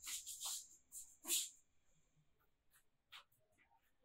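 Faint scratchy rustling of something being handled, in a few short strokes over the first second and a half, followed by a couple of soft clicks.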